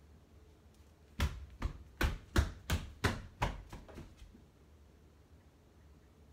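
A child's quick footsteps on a hardwood floor: about nine steps in three seconds, growing fainter as they move away.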